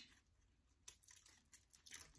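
Near silence with a few faint clicks and light crinkling as the packaging of a liquid eyeliner pen is worked open by hand.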